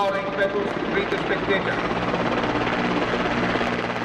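A formation of Mi-17 military helicopters flying past, their rotors and engines making a steady, continuous drone.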